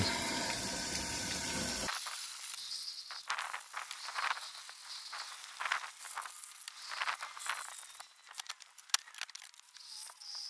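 Water from a garden hose backflushing through a diesel particulate filter and running out into a plastic tub. A steady rush of flow for about two seconds stops abruptly, giving way to lighter spattering and dripping with irregular sharp clicks.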